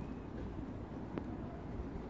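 Steady low outdoor background rumble of a quiet street, with one faint click a little over a second in.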